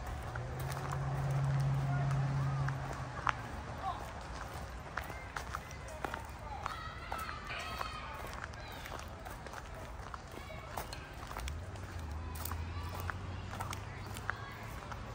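Footsteps and scuffing as a person moves on foot, with irregular sharp knocks. A low, steady, voice-like hum comes in near the start and again near the end, and faint voices are heard in the middle.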